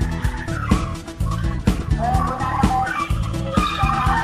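Background music with a steady beat, over which a small Honda hatchback's tyres squeal and skid as it drifts tightly around cones.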